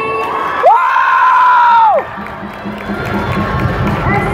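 A gym crowd cheering and shouting. About half a second in, one voice close to the microphone lets out a single loud, high-pitched yell that holds for over a second, then drops away.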